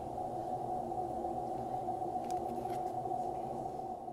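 A steady low drone of several held tones from the soundtrack of a video artwork, with a couple of faint clicks about two and a half seconds in.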